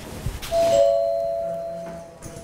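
Electronic doorbell chiming ding-dong: two notes, the second a little lower, ringing on and fading slowly, after a low thump.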